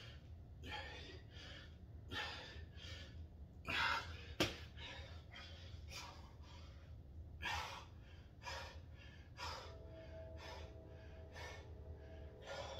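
A man breathing hard in short, gasping breaths about once a second, winded from sets of push-ups and squats. A single sharp click sounds about four seconds in.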